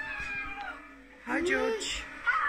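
Meowing: two drawn-out cat-like cries. The first falls away at the start, and the second, about a second later, rises and falls.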